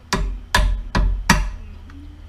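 Four sharp taps, about 0.4 s apart, seating a headlight adjuster into its new mounting bracket on the headlight frame.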